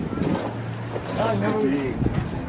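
Outdoor street ambience: wind on the microphone, a steady low engine hum and indistinct voices in the middle.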